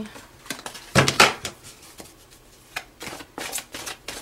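A deck of oracle cards being shuffled by hand: a string of short, crisp card snaps and rustles, the loudest about a second in and another cluster near the end.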